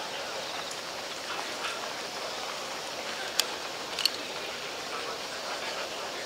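Steady outdoor background hiss with two sharp clacks about two-thirds of a second apart in the middle, from fire hose fittings and equipment being handled on pavement.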